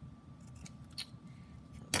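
Small craft scissors snipping through washi tape: a couple of faint clicks, then one sharp snip near the end.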